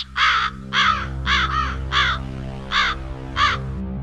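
A crow cawing about seven times in quick, uneven succession, the calls stopping about three and a half seconds in, over a steady low droning tone.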